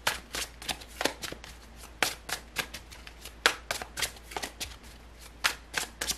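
A deck of tarot cards being shuffled by hand: a run of short, sharp card clicks about three a second, slightly irregular, as the cards are passed from hand to hand.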